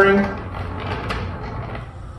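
Small plant-watering robot's drive motor running as it rolls along its plastic track, a low, even mechanical whir with faint ticks.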